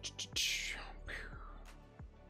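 A couple of light clicks, then two breathy, slurping sips taken from a mug, each sliding down in pitch, about half a second and a second in; another click follows.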